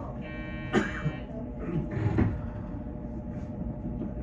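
A steady electronic tone, buzzer-like with many overtones, sounds for about a second from a train standing at a station platform, with a sharp click in the middle of it; a few low thumps follow about two seconds in, over a steady low hum.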